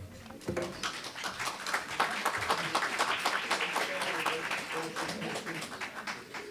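Audience applauding, many hands clapping together; the applause starts about half a second in and thins out near the end.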